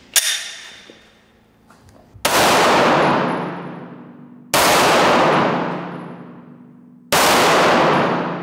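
Pistol fired three times through a car windshield, with Sellier & Bellot XRG 100 gr hollow-point solid rounds, about two and a half seconds apart. Each shot is very loud and rings on in a long echo off the hall walls.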